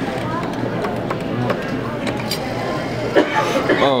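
Background chatter of voices with faint music, ending with a man's rising, excited 'oh'.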